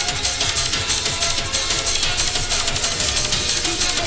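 Happy hardcore rave music from a live DJ mix: a fast, steady electronic beat under synth lines, with no MC vocal.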